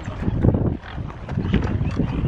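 A crowded flock of mute swans jostling around a barrow of feed: a jumble of irregular dull thumps and scuffles from feet and wings on shingle, loudest about half a second in.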